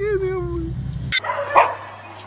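An animal's drawn-out cry, falling in pitch and fading out after about two-thirds of a second, then a single loud dog bark about a second and a half in.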